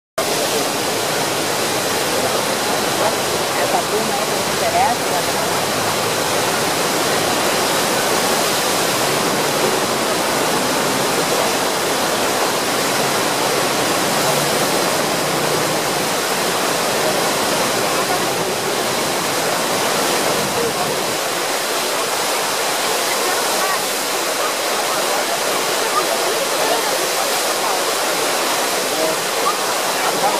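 Churning whitewater of the Eisbach river standing wave: a loud, steady rush of water, with faint voices underneath.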